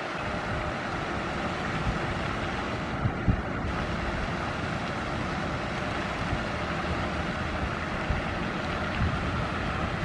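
Wind buffeting the microphone outdoors: a steady rushing noise with low rumbling thumps every second or two, the strongest about three seconds in.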